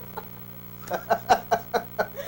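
A steady electrical mains hum under quiet room tone, then about a second in a burst of laughter in quick pulses.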